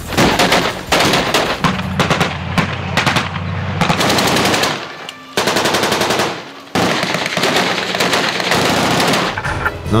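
Rapid machine-gun fire in long bursts, broken by two short lulls around the middle and resuming abruptly each time.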